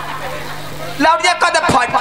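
A voice through a stage PA system: about a second of pause filled by a steady low hum and background noise, then speaking again about a second in.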